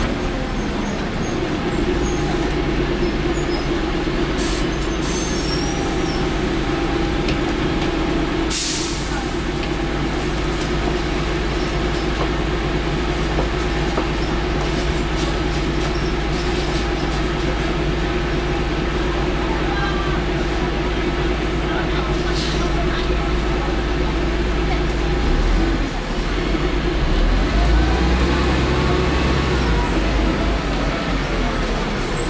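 Cummins LT10 inline-six diesel of a Leyland Olympian double-decker bus running steadily under way, heard from inside the lower deck, with a short burst of hissing air about nine seconds in. Near the end the engine note shifts and changes pitch.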